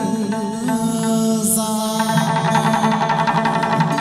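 Hát văn ritual music: an ornamented, wavering melody over sustained pitched accompaniment. About halfway through it turns fuller, with a steady tapping beat.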